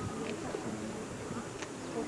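Low, indistinct voices of spectators murmuring at a distance over steady hiss, with no clear words.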